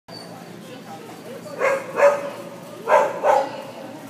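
A dog barking four times in two quick pairs, short pitched barks about a second apart.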